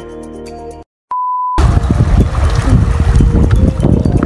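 Background music cuts off, and after a moment's silence a short steady beep sounds, about half a second long. It gives way to loud, rough rushing noise of wind and waves on the microphone at the water's edge.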